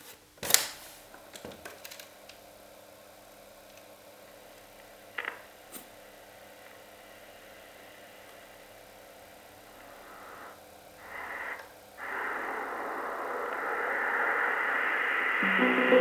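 Sony TC-61 cassette recorder: a sharp click of a transport key about half a second in, then a faint steady noise of the tape running. From about twelve seconds a louder, rising hiss comes from its small speaker, and near the end music starts playing back from the tape.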